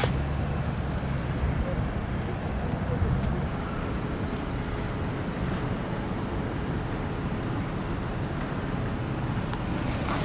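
Outdoor traffic noise: a steady low rumble with no clear events.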